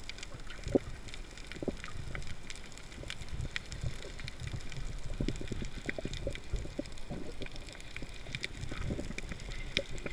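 Underwater sound picked up by a submerged camera: a steady low rumble of moving water, with sharp clicks and crackles scattered throughout.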